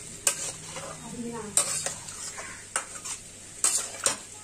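A steel spatula scraping and knocking against an aluminium kadai as it stirs a pointed gourd and potato curry, about four strokes roughly a second apart, with the gravy sizzling faintly underneath.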